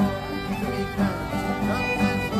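Acoustic old-time string band playing a lively tune: two fiddles carry the melody over a steadily strummed acoustic guitar.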